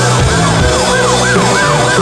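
Live rock band playing loud, with a high, siren-like wailing tone that swoops up and down about three times a second over the drums and bass.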